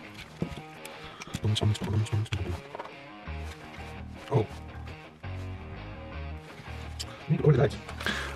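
Background music with a bass line changing note every half second or so, and a few light clicks from plastic parts being handled.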